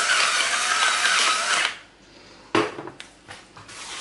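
Electric pepper mill grinding pepper steadily, stopping abruptly a little under two seconds in. A few light clicks and knocks follow, the loudest about two and a half seconds in.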